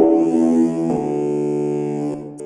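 SEELE Abacus software synthesizer, which uses automated waveshaping for FM-like tones, playing a held note with a buzzy, harmonically rich tone that changes character about a second in.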